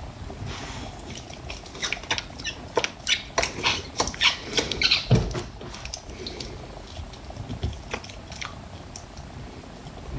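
Soapy, lathered hands rubbing and squishing together, a run of irregular wet smacks and crackles that is busiest in the first half and thins out later.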